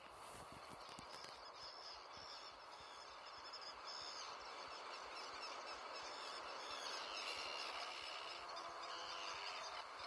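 Sound-effect intro of a recorded children's song, played back: a steady, slowly swelling hiss of outdoor ambience with faint bird-like chirps over it. It starts with a click, and the music begins to come in near the end.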